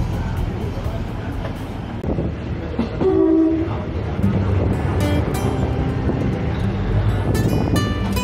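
Rumble of a diesel passenger train pulling away, heard from inside the carriage under background music, with a short horn blast about three seconds in.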